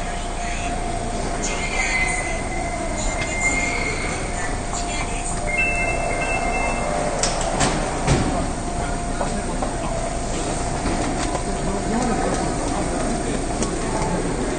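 Kita-Osaka Kyuko 8000 series subway train pulling into the platform and braking to a stop, with a steady whine, two brief high squeals, and a few sharp knocks about seven to eight seconds in.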